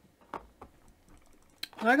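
A few light, sharp taps and clicks from hands working a rubber stamp and ink pad on a canvas. The loudest tap comes about a third of a second in, with a sharper click just before the end.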